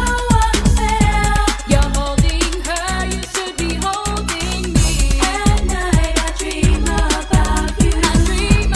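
Freestyle dance music playing: a steady electronic drum beat with low drum hits that drop in pitch, a synth bass and a sung melody over it.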